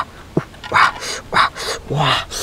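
Crisp cabbage leaves crunching and rustling in short separate bursts as hands press them down into a clay pot.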